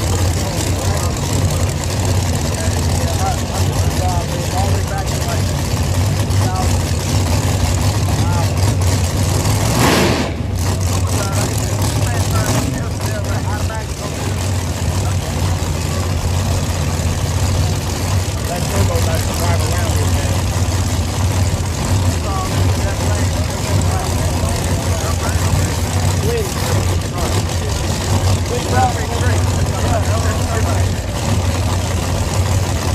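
Engines idling with a steady low hum under the chatter of many voices at a drag strip. There is one short, loud burst of sound about ten seconds in.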